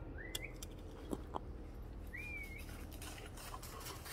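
A bird calling twice in the woods: short whistled notes that rise in pitch, one right at the start and one about two seconds in. Faint rustling of dry leaf litter follows as the dog runs across it.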